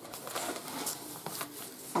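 A kraft paper bag of cornmeal rustling as it is handled and set down on a table, with a few faint taps.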